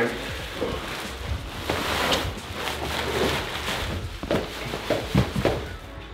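Black plastic trash bags rustling and crinkling in irregular bursts as they are pulled up and worn as improvised snow pants, over a low background music bass.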